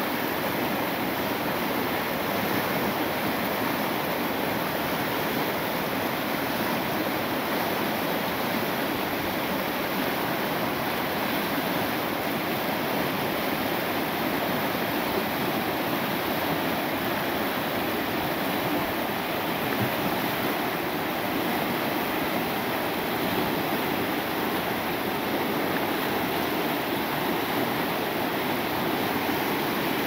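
Fast river water rushing over rock ledges in whitewater rapids, a steady, even rush with no pauses.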